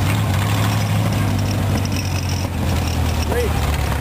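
Rat rod's open-exhaust engine running at a steady low note as the car drives, with road and wind noise. A brief voice-like call sounds near the end.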